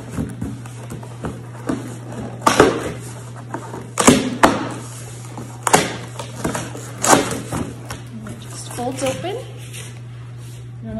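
Stapled cardboard packaging being pried and pulled open at its staples: a handful of sharp rips and pops spread a second or more apart, over a steady low hum.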